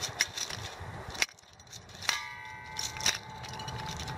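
Small metallic clicks and ticks as the brass fitting of a new propane pigtail hose is threaded by hand into its adapter. About halfway through, a ringing tone of several pitches starts and holds for about two seconds.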